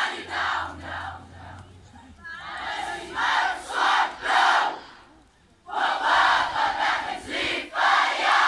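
A massed stand of schoolchildren shouting a school war cry (kreet) together in loud chanted phrases, with a short lull about five seconds in before the next phrase.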